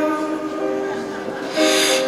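Live blues band on a slow ballad: a held keyboard chord of several steady notes rings out and fades between sung lines. Near the end a new chord comes in together with a breathy hiss.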